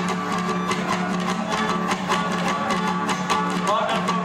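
Tierra Caliente trio playing a gusto calentano: violin melody over a strummed guitar and steady beats on a small double-headed tamborita drum.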